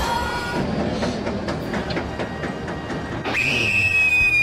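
Sound effects on an animated intro: a run of irregular clattering clicks, then a high whistle that comes in sharply a little after three seconds in and slides slowly lower.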